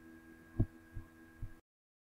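Three soft, low thumps over a faint steady hum, the first the loudest, then the sound cuts off suddenly about one and a half seconds in.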